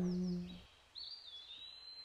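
A held sung note fades out, then a single small bird call: a thin, high whistle that dips in pitch and then holds steady for about a second.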